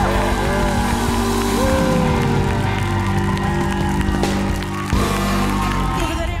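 A live band playing on while an audience cheers and applauds, the cheering and clapping as a steady wash over the music.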